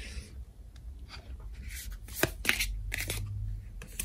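Tarot cards being handled: the deck rustling as a card is drawn and laid into the spread on the table, with a few sharp taps of card stock about halfway through.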